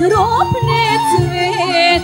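Macedonian folk song: a woman's voice sings a wavering, ornamented melody over flute, a plucked string instrument and a bass line that changes note about every half second.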